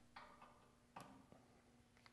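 Near silence with three faint metal clicks: a grease gun's coupler being fitted onto a snowblower bearing's grease fitting.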